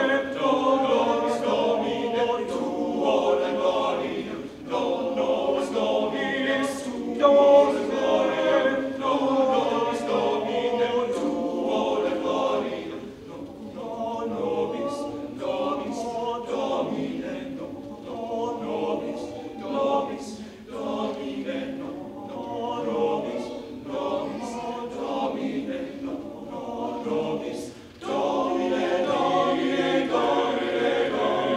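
Men's choir singing a cappella in several voice parts. The singing is full for the first dozen seconds, drops to a softer passage through the middle, and swells back up near the end.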